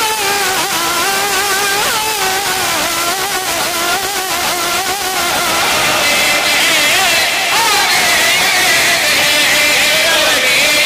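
A man's voice chanting a qaseeda in long, wavering, held melismatic notes with no distinct words; about six seconds in the line climbs to a higher pitch.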